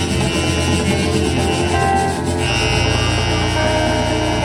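Live merengue típico band playing, with congas and güira under keyboard, bass and a reed instrument. A deep bass line comes in strongly about two and a half seconds in.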